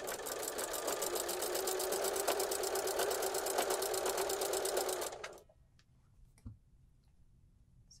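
Necchi domestic sewing machine with a walking foot running at a steady, even stitch rate, sewing a folded hem through heavy upholstery fabric; it stops about five seconds in.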